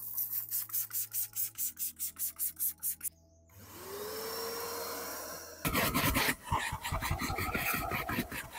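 Trigger spray bottle pumped rapidly, about five squirts a second, misting cleaner onto car floor carpet. A vacuum motor then spins up with a rising whine, and from about six seconds in its hose nozzle scrubs loudly over the wet carpet.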